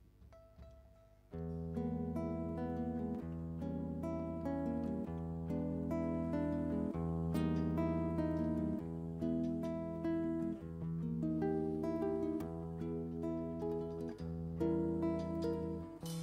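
Instrumental introduction by a live acoustic band: plucked guitar over sustained low notes that change about every two seconds. It starts suddenly about a second in, after near silence.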